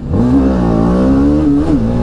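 BMW sport motorcycle's engine pulling away under acceleration. Its pitch climbs quickly at the start, then holds fairly steady, with a brief rise and dip in pitch near the end.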